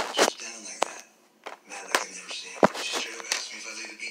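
People talking, with several sharp clicks and knocks from a plastic DVD case being handled and opened.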